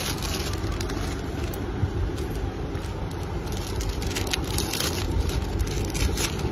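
Clear plastic packaging bags crinkling and rustling as a pair of children's sandals is slipped into one, busiest in the second half. Under it runs a steady low rumble.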